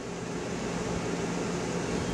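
Steady hiss of room noise with a faint low hum underneath, unchanging.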